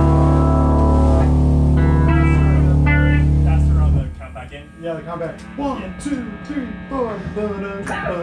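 Electric guitars and bass guitar holding one loud sustained chord that cuts off about four seconds in, followed by quieter single guitar notes picked and bent.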